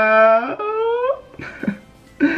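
A man's voice holding one long drawn-out note, gently rising in pitch, then a shorter second note sliding upward that ends about a second in.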